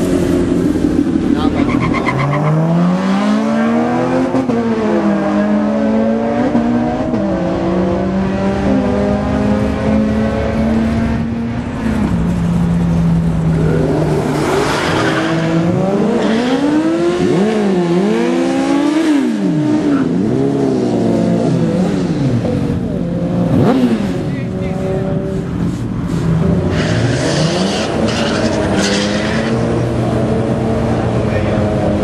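Cars accelerating hard down a drag strip. Their engines rev with pitch climbing and dropping back at each gear change, and more than one engine is heard at a time.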